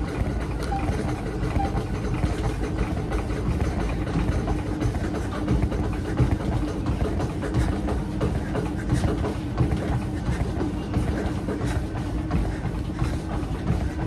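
Treadmill in use for running: the motor and belt hum steadily, with the repeated thuds of running footfalls on the deck.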